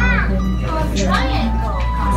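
Indistinct chatter of voices with background music, over a steady low hum.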